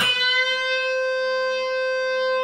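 Electric guitar played through a computer amp simulator: a single B note picked once and left ringing, held at a steady pitch.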